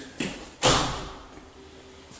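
An interior door shutting: a light click, then a single loud thud about half a second in.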